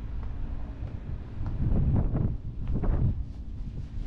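Wind buffeting the microphone as a low rumble, swelling louder twice around the middle.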